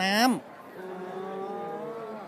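A man's voice ends a word, then holds a long, quiet, drawn-out hesitation sound, "uhh".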